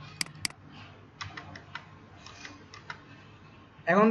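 Two sharp computer mouse clicks a quarter second apart, then about ten lighter keystrokes on a computer keyboard.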